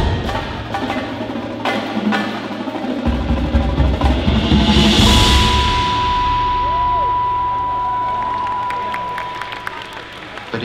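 An indoor percussion ensemble plays drums and percussion, with a cymbal swell building to a peak about halfway through. A steady high electronic tone enters at the peak and holds to the end.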